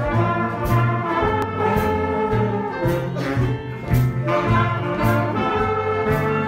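A big band playing jazz: the brass section plays over a steady beat, with a bass line moving note by note underneath.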